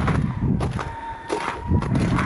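Footsteps in wet slush and ice on a thawing dirt road, irregular and uneven, over a low rumble.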